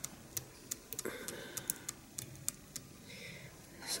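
Faint, irregular light clicks and ticks as fingers handle the glued tail on its needle and the small glue applicator.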